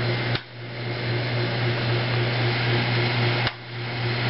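Steady electrical hum with a hiss over it from a homemade CO2 laser rig's running equipment. Two sharp clicks come about half a second in and near the end, and each time the noise briefly drops.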